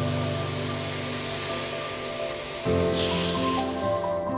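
Water sprinkling from a plastic watering can onto a bonsai pot's mossy gravel soil, a steady hiss that stops shortly before the end. Background music plays throughout.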